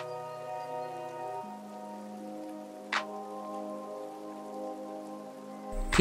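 Background music: soft, sustained synth chords held steadily, shifting to a new chord about a second and a half in, with a single sharp click near the middle.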